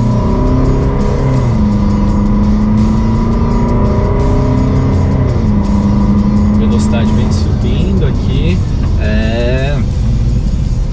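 Fiat Toro's 2.0 turbodiesel engine under full throttle from second gear, heard from inside the cabin. The engine note rises, then steps back down as the automatic shifts up.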